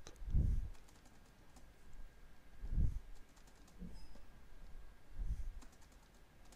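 Computer keyboard keys clicking lightly as a short numeric password is typed in, then typed again, with three soft low thumps spaced about two and a half seconds apart.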